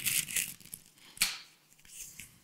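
A small folded paper note being unfolded by hand: the paper rustles and crinkles in a few short bursts, the loudest about a second in.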